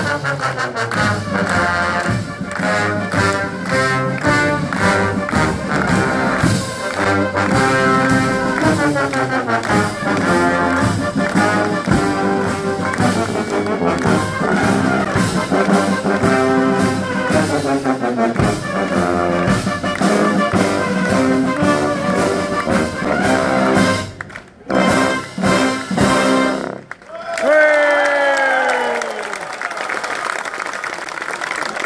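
Military marching brass band playing a march: cornets, trombones, euphoniums and sousaphones over steady bass drum beats. The music breaks off a few seconds before the end, and the crowd claps.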